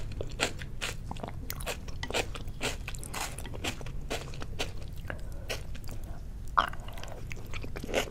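Close-miked chewing of soy-sauce-marinated salmon sashimi and onion: wet, crunching mouth sounds in a quick, irregular series, with one louder click about six and a half seconds in.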